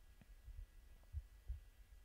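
Near silence broken by a few soft, low thumps: handling noise on a handheld microphone held close to the mouth.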